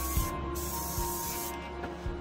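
Aerosol spray paint can hissing as paint is sprayed, breaking off for a moment about a third of a second in, then stopping for good about a second and a half in.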